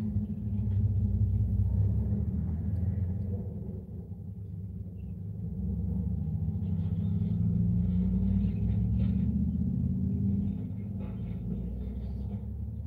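A car engine idling, heard from inside the cabin as a steady low rumble. It eases slightly about four seconds in and swells again after about six seconds.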